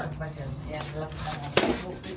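Faint background voices over a low steady tone, with one sharp clack about one and a half seconds in.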